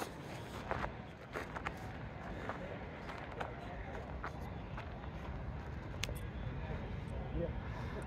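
Faint outdoor crowd ambience: distant chatter over a low steady rumble, with a few soft footsteps and a sharp click about six seconds in.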